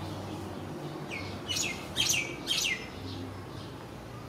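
A small bird chirping: four quick, high chirps, each sliding down in pitch, between about one and three seconds in, the loudest about two seconds in.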